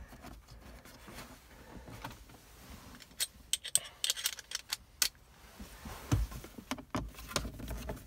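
Small scattered clicks and light rattles of screws and the plastic instrument cluster bezel being handled while the screws are started by hand, thickest a few seconds in, with a dull thump about six seconds in.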